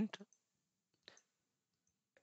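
A single faint computer mouse click about a second in.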